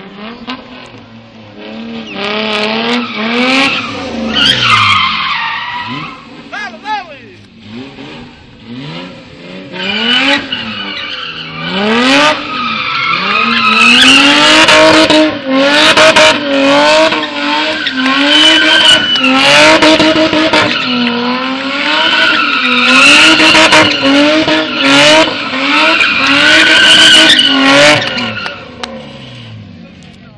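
BMW E30 drifting in tight donuts. Its engine revs up and down over and over while the rear tyres squeal and skid. The sound builds about ten seconds in, stays loud, and fades near the end.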